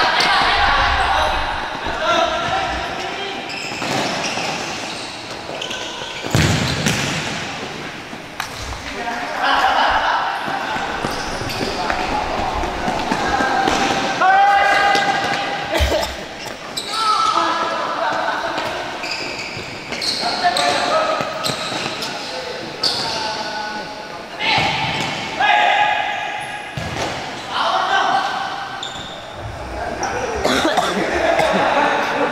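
Futsal ball being kicked and bouncing on an indoor court, with players' shouts echoing in a large hall.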